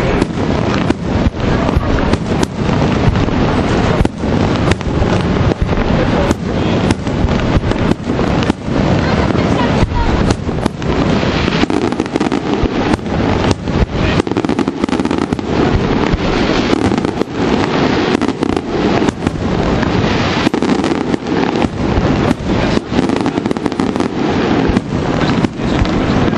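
Aerial firework shells bursting in quick succession, bang after bang with no pause, over a steady crackle.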